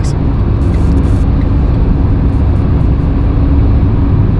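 Car cabin noise while driving at speed: a steady low rumble of road and engine, with a faint steady hum running through it.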